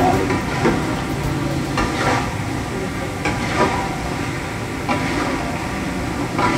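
Long metal spatula stirring and scraping pork cooking in coconut milk in a stainless steel pan over a gas burner, with a steady sizzle. A sharper scrape comes about every second.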